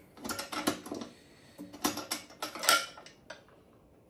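The metal latch and hinged door of the green section of an LFE traffic signal being unfastened and swung open: two runs of metallic clicks and clanks, the loudest near three seconds in.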